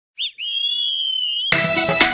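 Background music starting up: a short chirp, then a high whistle-like note held steady for about a second, and about halfway through a full band comes in with a fast, steady beat.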